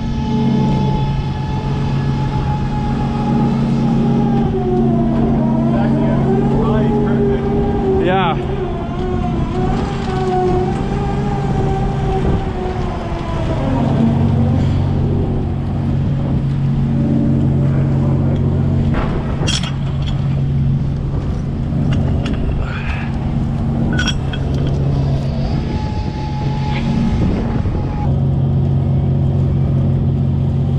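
A fishing trawler's engine and deck machinery hum steadily on deck. Over it, a wavering whine, typical of a hydraulic winch or net reel under load, runs for about the first half, stops, and comes back briefly near the end. A few short, sharp gull calls cut in.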